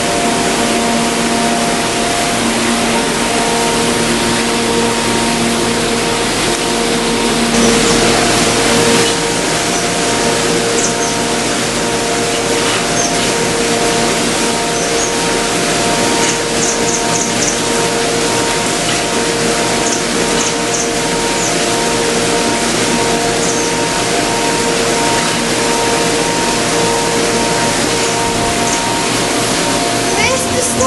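A soundtrack laid over the footage: a steady, loud rushing hiss like rain or running water, with long held notes underneath that change slowly. It starts and stops abruptly.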